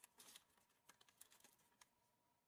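Very faint handling noise of folded origami paper: a few light, separate ticks and rustles as the paper piece is held and pressed down by hand.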